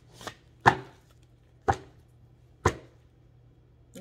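A deck of tarot cards knocking against a tabletop: three sharp knocks about a second apart, after a fainter tap.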